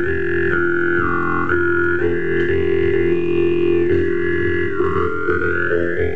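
Jew's harp played in a steady drone, the melody picked out in its overtones: a bright overtone steps between pitches, then glides slowly upward near the end.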